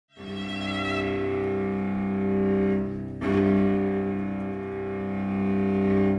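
A string quartet playing slow, sustained chords on bowed strings, with a fresh bow stroke into a new chord about three seconds in.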